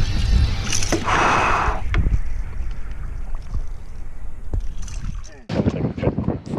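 Bull redfish thrashing in a landing net at the water's surface: a burst of splashing about a second in, over a steady low rumble of wind on the microphone. Voices come in near the end.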